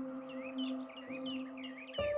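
A steady, held drone note of background music with a few overtones, under birds chirping in many short, quick calls that rise and fall.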